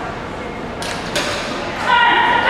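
A few brief scuffing rustles and a small thump about a second in, then a person's voice calling out loudly just at the end, as on an agility course where the handler shouts commands to the dog.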